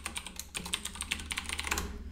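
Typing on a computer keyboard: a quick, uneven run of key clicks as a password is entered.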